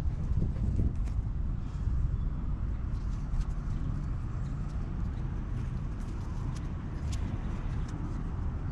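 A steady low rumble, with faint rustling and light clicks from a braided synthetic soft shackle being handled and threaded through an aluminium recovery hitch.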